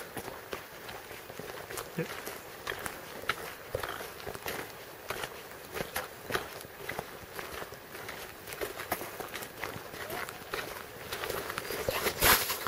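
Footsteps of someone walking along a wet, partly snow-covered track, a series of short, sharp steps at an uneven walking pace.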